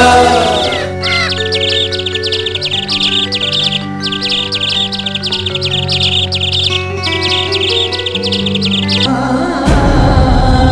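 Many small birds chirping rapidly and continuously, in three stretches broken by brief gaps, over soft music of long held notes. Near the end the chirping stops and the music changes, with a low thump.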